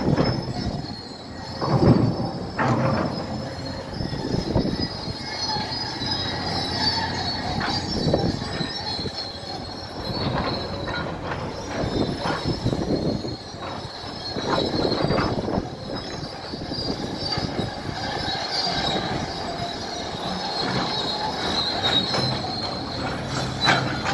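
Crawler bulldozer working: diesel engine running under load while its steel tracks give a steady high squeal and clank in irregular surges.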